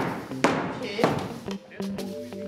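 Hammer striking a wooden door frame: a few sharp blows about half a second apart, the first the loudest, over background music.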